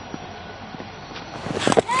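Steady background noise of a cricket ground's broadcast sound, with a sharp knock near the end as the ball comes off the leading edge of the bat.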